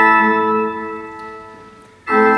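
Church organ holding a chord, which then fades away over about a second and a half into the church's reverberation.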